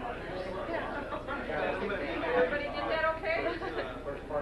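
Several people talking at once: room chatter with overlapping voices.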